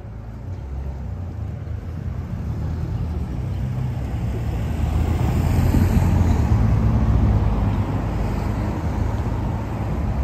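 City road traffic: a low rumble of car engines and tyres that grows louder toward the middle and eases off a little near the end.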